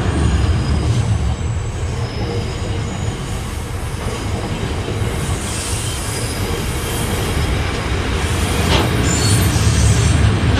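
Freight train of rail tank wagons rolling past at close range: a steady heavy rumble of steel wheels on rail, with faint thin wheel squeals in the first few seconds. The rumble eases a little mid-way and builds again near the end, where a sharp knock sounds.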